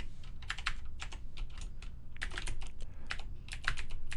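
Typing on a computer keyboard: short runs of keystrokes with brief pauses between them, over a faint steady low hum.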